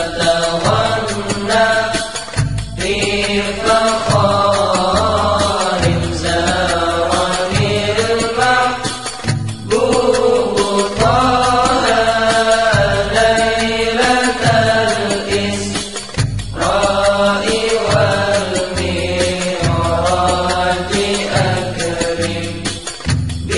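A sholawat, an Indonesian Islamic devotional song: chanted vocals sung in Arabic over instrumental accompaniment with a steady, repeating low beat.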